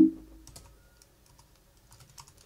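Typing on a computer keyboard: a short, irregular run of faint key clicks as a command is typed and entered.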